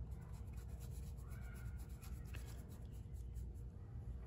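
Faint scratching of a paintbrush on canvas as oil paint is lightly brushed into wet paint, over a low steady room hum.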